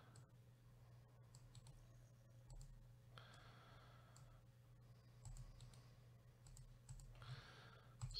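Near silence with faint, scattered computer mouse and keyboard clicks over a steady low electrical hum.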